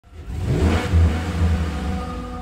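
Logo intro sound effect: a rising whoosh over a deep, sustained rumble that swells up within the first half second.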